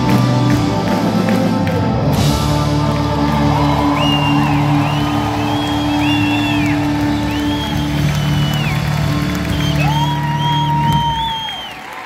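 Live band with drums, acoustic guitar, upright bass and keyboard playing a rhythm that breaks off into a cymbal crash about two seconds in, then holding a final chord. High whistles and cheering from the audience sound over the held chord.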